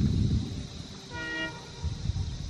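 A short toot of a diesel locomotive horn, from one of a pair of WDG3A ALCO locomotives, sounding once a little past the middle. A low irregular rumble, loudest at the start and again near the end, runs underneath.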